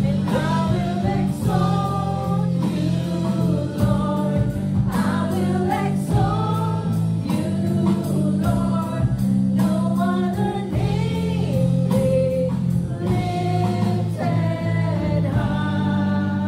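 A live church worship band plays a gospel-style worship song. Several voices sing together over sustained keyboard chords, guitars and drums.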